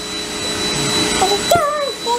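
Steady rushing machine noise from a running household appliance, with a thin high whine through it. In the second half a toddler makes a short high-pitched vocal sound that rises and falls in pitch, with a small click just before.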